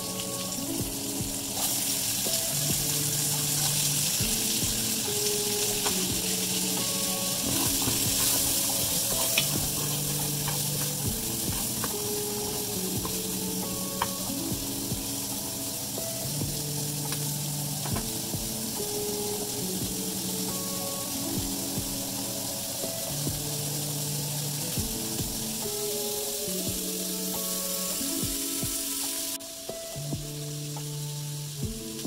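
Carrots and sliced red onions sizzling in hot bacon fat in an enamel pot, with scattered clicks of a stirring spoon against the pot. The sizzle starts about a second and a half in and cuts off suddenly just before the end.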